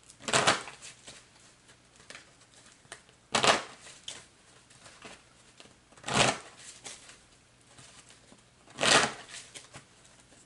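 A deck of tarot cards being shuffled by hand: four short bursts of card-shuffling, about three seconds apart, with faint card ticks in between.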